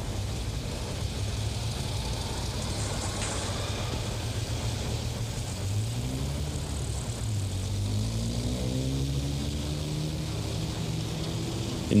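Traffic noise: a motor vehicle's engine running with a steady low rumble. About six seconds in, its note rises in pitch for a few seconds as it speeds up.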